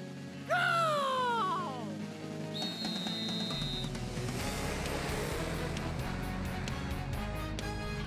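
A cartoon referee's whistle is blown once, a steady high blast about a second long, to start a go-kart race, over background music. Just before it a loud call glides down in pitch, and after it a rumbling rush sets in as the karts set off.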